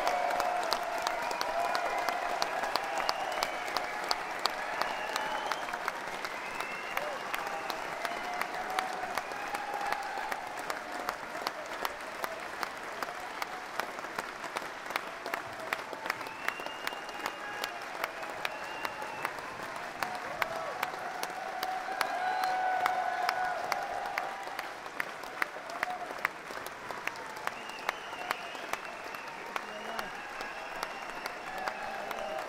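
Concert audience clapping after a song, dense and steady, with scattered shouts from the crowd over it.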